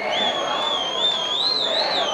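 A long high whistle from the crowd that wavers slowly up and down in pitch, over a murmur of stadium spectators.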